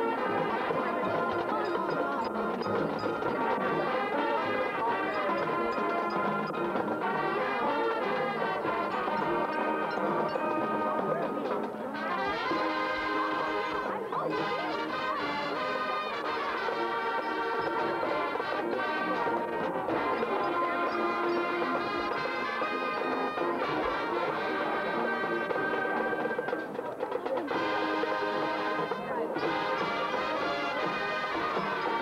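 High school marching band playing, brass to the fore, with sustained full-band chords.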